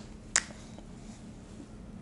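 A single sharp click from a whiteboard marker about a third of a second in, then quiet room tone.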